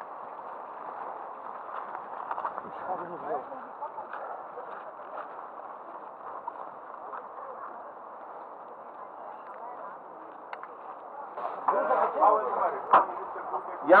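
Indistinct men's voices of a group talking over a steady rustling noise, growing louder and closer near the end, with a sharp click shortly before the end.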